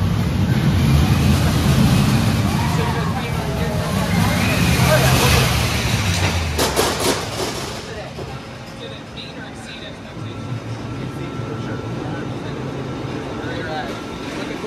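Vekoma Boomerang steel shuttle roller coaster train running along the track with a loud rumble for the first six seconds, riders' voices heard over it. A quick run of clacks follows around seven seconds in, and then the ride sounds quieter.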